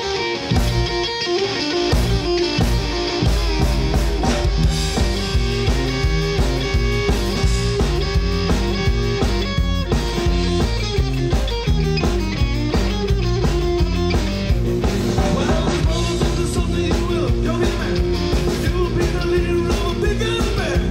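Live rock band playing on stage: electric guitars over a drum kit, the low bass and kick drum filling in fully about two seconds in.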